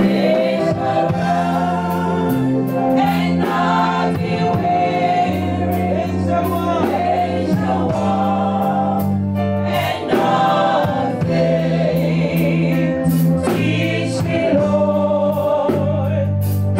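A group of women singing a gospel song together into microphones, over instrumental accompaniment with a held bass line and a steady drum beat.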